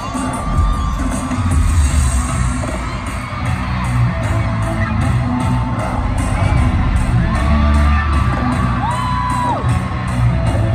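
Music with a heavy bass plays over a stadium sound system while the crowd cheers and screams; several long, high-pitched fan screams rise and fall, one near the start and more near the end.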